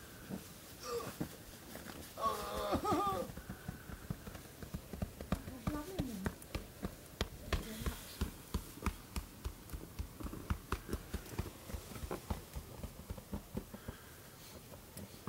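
A voice calls out briefly about two seconds in, and another brief voice sound follows a few seconds later. Through the second half there is a run of irregular soft knocks, several a second.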